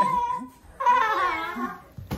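A young child's high-pitched, drawn-out whining cries while wrestling in play: one trailing off in the first half-second and a second, wavering one about a second in.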